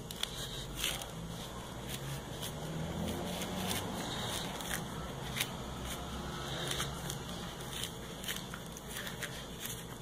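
Metal spoon worked round under an orange's peel, separating the rind from the fruit with faint crackling and many small scattered clicks.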